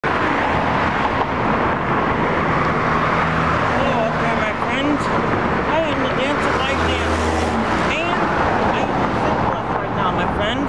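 Steady road traffic noise from cars on a busy city street, with a low engine hum from a passing vehicle swelling briefly around seven seconds.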